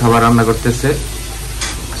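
Sliced onions sizzling as they fry in a pan while a spatula stirs them, with a short scrape of the spatula about one and a half seconds in.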